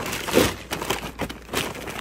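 Hands rummaging through a reusable shopping bag, its fabric and the packaging inside rustling and crinkling with many small clicks and knocks.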